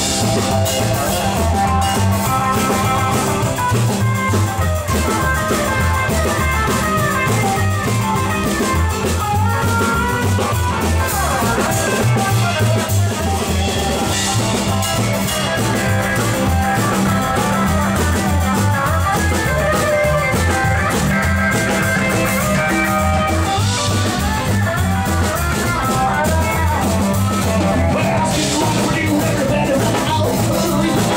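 Live rockabilly band playing an instrumental stretch: electric guitar lines over a moving bass line and a drum kit beat, loud and steady throughout.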